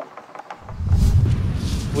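A few faint clicks of small tools working on a plastic RC surfboard. About half a second in, these give way to a loud, low rumble of wind buffeting the microphone.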